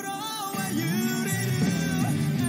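Male singer performing a rock ballad live with a rock band, his voice gliding between held notes. About half a second in, the bass and fuller band accompaniment come in and the music gets slightly louder.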